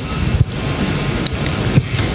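Steady hiss and low rumble of room noise picked up through a hall's microphone and sound system, with a faint click about half a second in.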